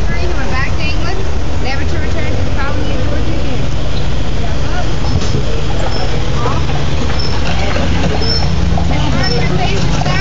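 Steady low rumble of vehicle traffic, with indistinct voices and many short high chirps over it.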